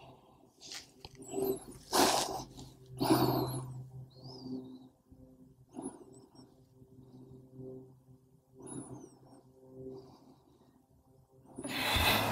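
A woman breathing out audibly while holding a seated forward-fold stretch, catching her breath after weighted Russian twists: two strong breaths about two and three seconds in, then softer ones. Faint high chirps and a low steady hum sit underneath.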